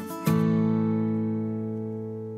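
Background music: an acoustic guitar chord strummed about a quarter second in, left ringing and slowly fading.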